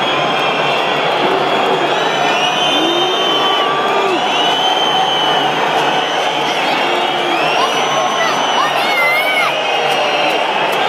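Football stadium crowd: a steady din of many supporters shouting, with high whistles scattered through it.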